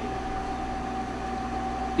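Steady background hum and hiss with a thin, constant whine, and no distinct events.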